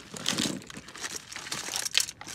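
Plastic bags and packaging crinkling and rustling as a hand rummages through a pile of items, with scattered light clicks and a sharper click near the end.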